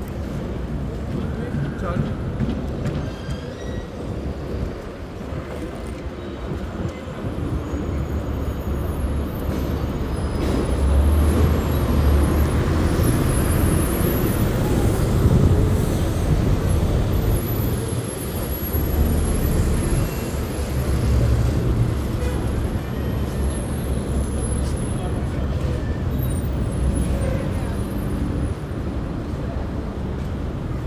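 Busy city shopping-street ambience heard from a slowly moving electric scooter: passers-by talking and road traffic, with a stronger low rumble through the middle of the stretch.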